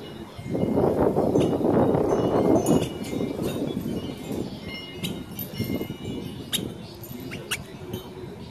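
Wind chimes and hanging glass crystals tinkling, with several clear, bright chime strikes in the second half. For about two seconds near the start, a louder rush of noise covers them.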